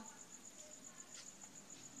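Faint cricket chirping: a high, even trill of rapid pulses over near silence.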